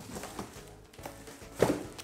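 Bubble wrap and a cardboard box being handled as a package is unpacked: rustling and light knocks, with a louder sharp rustle about one and a half seconds in, over quiet background music.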